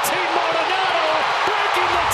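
Ballpark crowd cheering a home run: a steady roar of many voices, with individual shouts rising above it.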